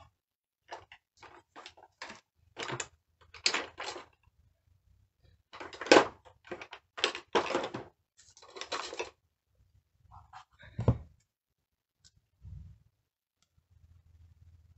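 Stamping supplies being handled on a craft desk: short rustles and clicks of plastic and card, with two louder knocks about six and eleven seconds in, the second a dull thunk, as a cling stamp and an acrylic block are picked up and set down.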